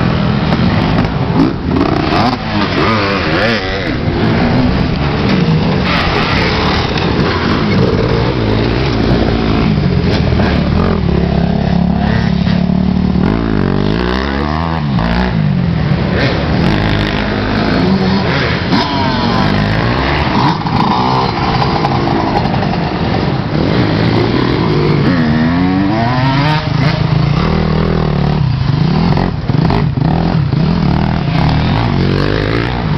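Dirt bike engines revving as several racers ride past one after another. Their pitch rises and falls with the throttle, with clear swells and drops as bikes go by near the middle and again about three quarters through.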